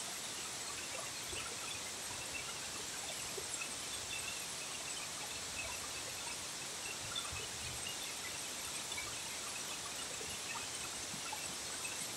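Waterfall running steadily into its plunge pool: a constant, even hiss of falling water.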